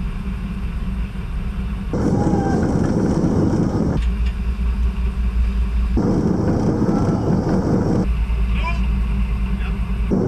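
Rescue boat's engine running under way, with wind and water rushing past. The mix of low rumble and hiss shifts abruptly about every two seconds.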